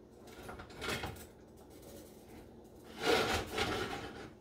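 A spoon scraping across the bottom of a cast iron skillet as thick sausage gravy is stirred: a faint scrape about a second in and a louder, longer one near the end.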